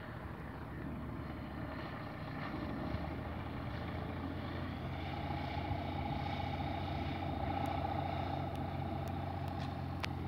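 Tecnam P2008 light aircraft's propeller engine running as it rolls along the runway, growing steadily louder as it draws near, with a steady droning tone strongest over the second half.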